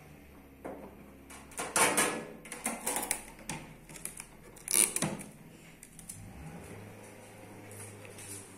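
Hands handling a countertop electric oven: a run of clicks and rattles against its metal casing and door about two seconds in, then one sharp click near the middle.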